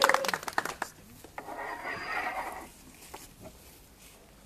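Hand clapping from a small crowd, dying away within the first second, followed by a short soft rustle of indistinct noise.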